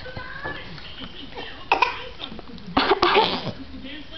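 A person coughing: one short cough about two seconds in, then a longer bout of coughs about three seconds in.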